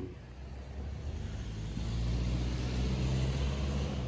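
A motor vehicle driving past on the street, its low engine hum and tyre noise swelling through the middle and fading toward the end.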